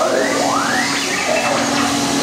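Hissing vapour vented from a Starspeeder ride prop as a steam effect, with a few electronic whistles sweeping up and down in pitch in the first second, typical of R2-D2's chatter.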